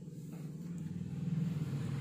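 A low, steady rumble that swells gently and holds.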